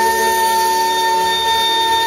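Male singer holding one long high note, almost steady in pitch, over a sustained chord from the band.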